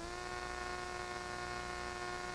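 Steady electrical buzz on a TV station's dead air during technical difficulties: one unchanging pitch with a stack of overtones, starting abruptly as the programme audio cuts out.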